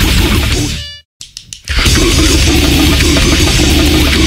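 Grindcore metal with heavily distorted guitars and pounding drums. About a second in the music drops to a brief silence with a few faint clicks, then comes back at full loudness just before the two-second mark.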